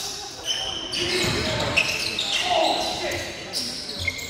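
Live basketball game in a gym: the ball bouncing, short high sneaker squeaks on the court floor, and players' voices calling out.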